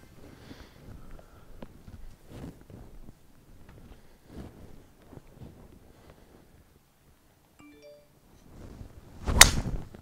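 Golf driver swung at a teed ball: a short whoosh, then one sharp crack as the clubface strikes the ball, near the end after several seconds of near-quiet.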